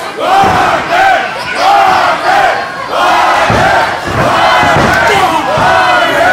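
A wrestling arena crowd shouting and yelling, many high voices calling out over one another.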